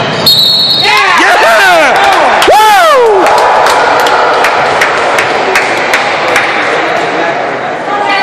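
A referee's whistle blows for just under a second near the start, followed by a flurry of short high squeals that rise and fall. Then a basketball bounces a few times on the gym floor over crowd chatter echoing in a large hall.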